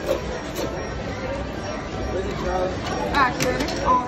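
Indistinct voices and chatter in a busy indoor room, with one voice speaking more clearly about three seconds in.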